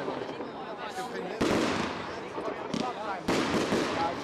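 Wolff Silver Salute firework shots going off: two sharp bangs about two seconds apart, each trailing off in about a second of crackle and echo.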